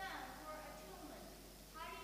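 A faint, distant voice speaking off-microphone, an audience member asking a question, heard in pitched phrases that break every fraction of a second.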